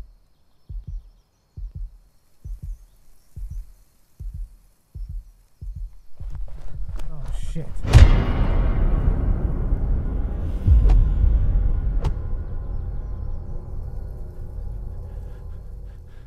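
Film sound design: a low heartbeat pulse, double thumps a little under once a second, gives way about six seconds in to a swelling rumble. It peaks in a loud sudden hit about eight seconds in, with two more sharp hits a few seconds later, and then slowly dies away.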